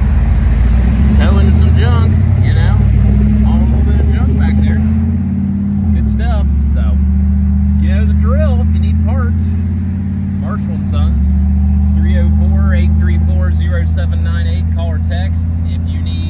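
Vehicle engine and road noise heard from inside the cab while driving: a loud, steady low drone that dips briefly about five and a half seconds in and again about eleven seconds in.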